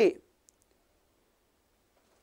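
Tail end of a spoken word, then near silence with one faint, brief click about half a second in.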